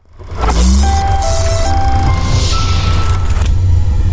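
Sound design for an animated logo sting: a loud, deep, steady rumble with hissing whooshes and a few short electronic tones over it.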